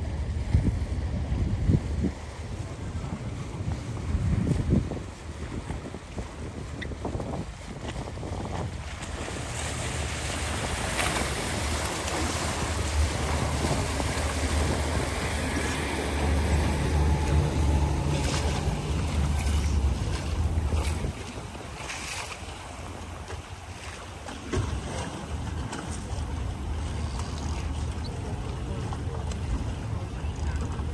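Yamaha outboard motor on a small boat running under way, a steady low drone over rushing water from its wake, with wind buffeting the microphone in gusts early on. The engine note is strongest in the middle and drops back about two-thirds of the way through.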